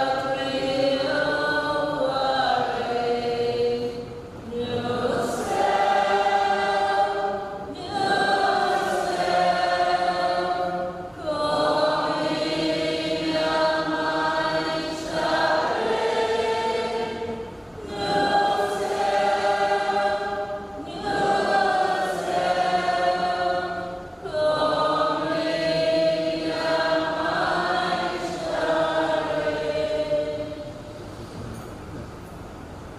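A group of voices singing a slow hymn in sustained phrases of about three to four seconds, with short breaks between phrases.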